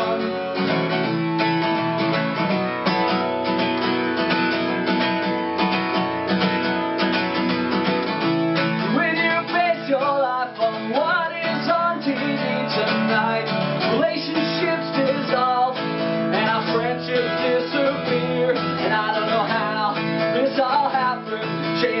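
Steel-string acoustic guitar strummed steadily in an instrumental passage of a folk song.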